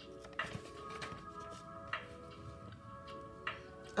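Soft background music with steady held notes and a light tick about every second and a half, three in all.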